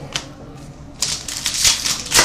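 Trading cards being handled: a light tap, then about a second of rapid rustling and clicking as cards are picked up and slid.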